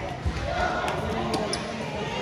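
A dull thud about a quarter second in, then a few light knocks, from children working the obstacles in an indoor gym, over the chatter of children and adults echoing in the large hall.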